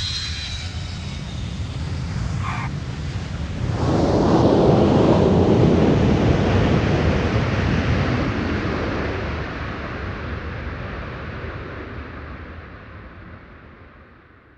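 Airplane sound effect: the rushing noise of an aircraft swells about four seconds in, then slowly fades away, standing for the plane landing.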